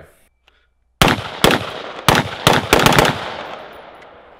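About a second in, a semi-automatic 5.56 mm T36C rifle (civilian G36C clone) fires about six rapid, irregularly spaced shots over two seconds. A ringing echo follows and fades out over the last second.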